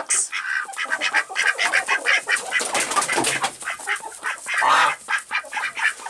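Ducks calling at close range in a quick run of short calls, with one louder, longer call near the end.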